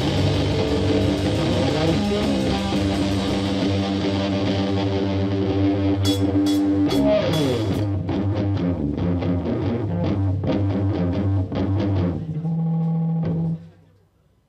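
Live stoner-rock band playing with electric guitar and drum kit: a run of rhythmic hits in the middle, then one held low note that stops abruptly near the end, closing the song.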